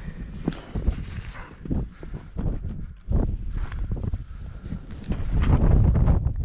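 Wind rumbling on the microphone, with irregular knocks and scuffs of handling, louder near the end.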